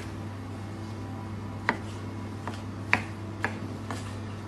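Chef's knife cutting vine tomatoes on a plastic cutting board: about six sharp knocks of the blade hitting the board, spaced unevenly, the loudest about three seconds in. A steady low hum runs underneath.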